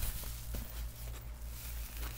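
Rustling and light crinkling of a collapsible insulated bag's fabric shell and foil lining as it is handled and opened, with a couple of soft clicks, over a steady low hum.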